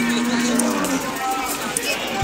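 A Nelore cow lowing: one long, steady moo lasting about a second at the start, over background voices.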